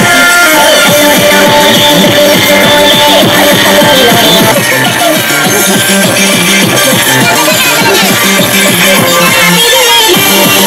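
Loud electronic dance music with a steady beat.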